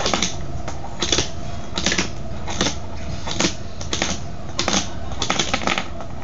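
Fingerboard clacking and tapping against a wooden floor and a small box as tricks are tried, a dozen or so irregular sharp clicks and knocks.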